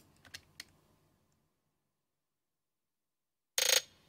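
A few faint computer clicks, then silence, then near the end a short, loud burst of a hip-hop snare roll playing back from the DAW, a rapid run of crisp hits, here with a Pultec-style EQ adding boosted lows and highs.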